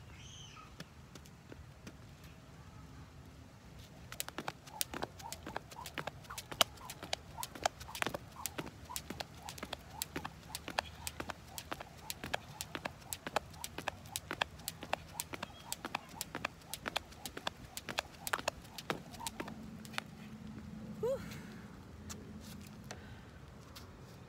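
Skipping with a jump rope on brick pavers: the rope slaps the ground in a fast, even run of sharp clicks that starts about four seconds in and stops a few seconds before the end.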